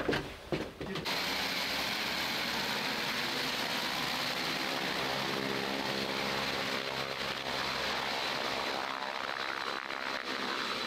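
Twin turboprop engines of a CASA CN-235 military transport aircraft running steadily as it taxis: a dense, even rush with a steady high whine. In the first second, before the engines come in, a few sharp knocks.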